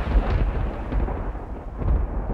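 A dramatic thunder-like rumble sound effect, low and noisy, swelling and fading and then rising again near the end.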